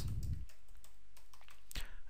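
Faint keystrokes on a computer keyboard as a short word is typed, over a steady low hiss.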